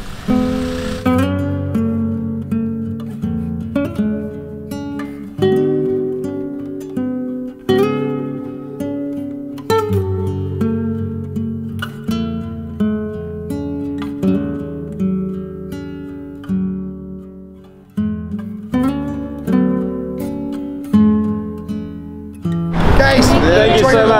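Background music: an acoustic guitar playing a melody of picked notes, each ringing and dying away.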